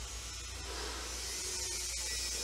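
Steady low electrical hum with a faint even hiss above it: background room tone.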